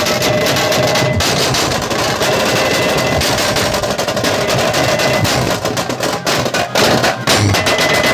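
A street band's stick-beaten drums playing a fast, dense, loud rhythm. A steady held tone rides over the drumming for the first few seconds.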